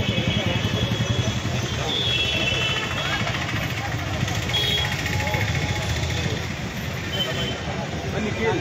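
Indistinct chatter of a gathered crowd over a steady low rumble of street traffic, with a few short high tones.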